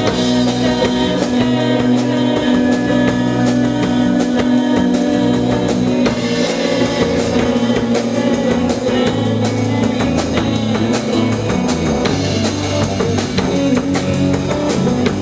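Live rock band playing a song, with a drum kit keeping a steady beat under electric guitar and bass guitar.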